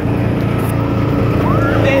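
Side-by-side utility vehicle's engine running steadily under throttle while driving across grass. A shout rises near the end.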